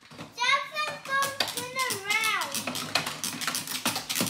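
A child's high voice calls out with rising and falling pitch for about two seconds, over a quick, dense run of plastic clicking and rattling from toy cars being pushed and revved on a wooden tabletop.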